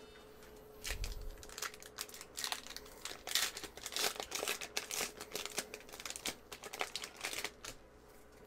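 Foil Pokémon TCG booster pack being torn open and crumpled by hand: a run of irregular crinkles and crackles starting about a second in and stopping just before the end.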